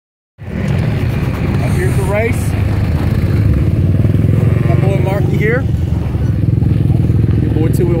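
Dirt bike engines idling with a steady low rumble, with voices over them about two and five seconds in.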